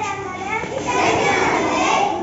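A young boy's voice reciting a poem, with other children's voices around him.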